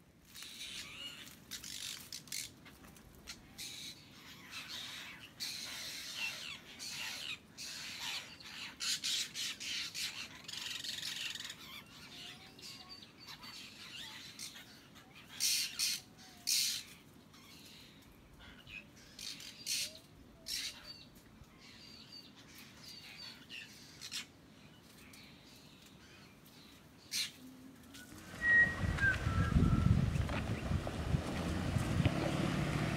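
Birds squawking and calling in short, sharp bursts, over and over. Near the end a much louder low rumble sets in.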